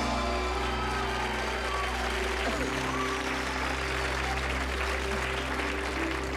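Studio audience applauding over a music cue of steady held notes.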